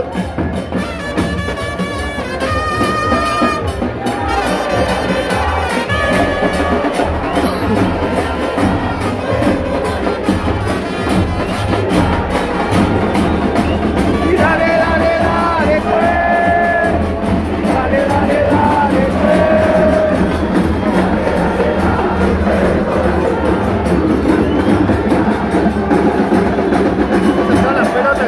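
A football supporters' band of big bass drums (bombos) and trumpets playing in the stands, with the crowd chanting along. Trumpet phrases stand out in the first seconds and again about halfway through, over a steady drumbeat.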